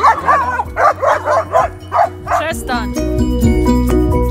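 A dog barking in a quick run of short barks, about three a second, over background music. The barking stops about two and a half seconds in, and the music, with a steady beat, carries on alone.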